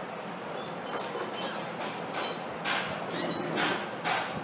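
Steady background hiss of the recording room, with a few faint brief clicks or rustles in the second half.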